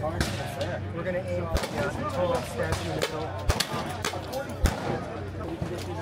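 Sharp single shots on an outdoor firing range: three cracks spaced irregularly, the loudest about three-quarters of the way in, over a steady background of voices and a low hum.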